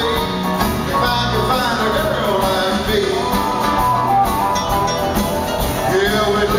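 Live country band playing an upbeat song: electric and acoustic guitars, bass, drums and keyboard.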